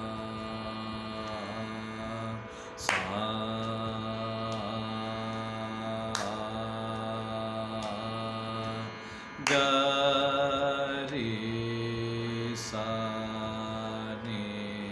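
A man's voice sings long held notes of a lower-octave Carnatic varisai exercise, stepping from note to note every one to three seconds, over a steady low drone.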